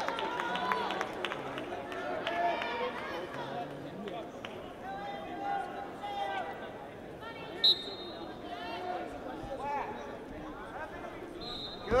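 Background voices and crowd chatter in a wrestling arena. About two-thirds of the way through, a short, sharp referee's whistle blast, signalling the start of the period from the referee's position.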